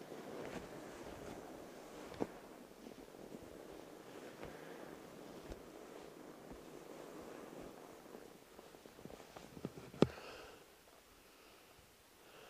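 Fat tires of a towed e-bike rolling through snow, a steady rushing crunch, with a small knock about two seconds in and a sharp, louder knock about ten seconds in, after which the rolling noise drops away as the bike slows.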